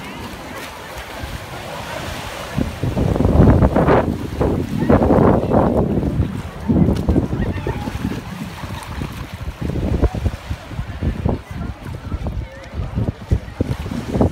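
Wind buffeting the phone's microphone in gusts, loudest from about three to six seconds in, over small waves washing onto the beach.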